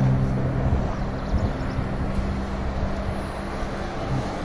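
Steady rushing of river rapids close by, with a faint low steady hum underneath.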